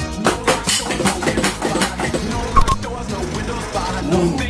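Drums played on an electronic drum kit along with a backing music track: a dense run of fast strikes on the pads and cymbals over the sustained music.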